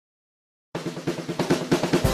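Intro music: after a moment of silence, a fast snare drum roll of rapid, evenly spaced strokes builds up and leads into an upbeat music track.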